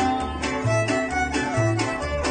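A small string band playing an instrumental tune: two violins carry the melody over strummed guitars and a small round-backed guitar, with bass notes alternating in a steady beat about twice a second.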